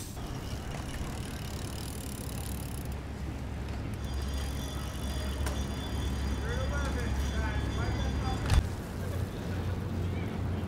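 Outdoor ambience with a steady low rumble and faint, distant voices about two-thirds of the way through, then a single sharp knock near the end.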